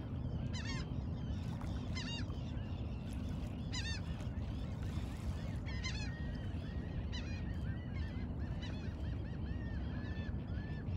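Birds calling: four harsh calls, each a rapid run of repeated notes, about every one and a half to two seconds, followed in the second half by a string of shorter, softer notes about twice a second.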